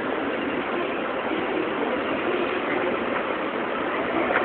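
Steady hum of street traffic with idling engines, without distinct events.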